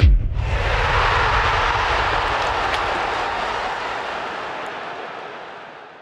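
Outro sound effect: a steady rushing noise that swells in as the jingle's beat stops, then fades out slowly over about six seconds.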